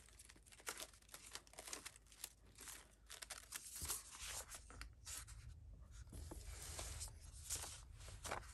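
Stack of painted paper pages being flipped and shuffled by hand: quiet, irregular papery rustles and swishes.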